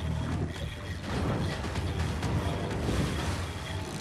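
Boat under power, its engine running, with water rushing and splashing against the hull, over background music.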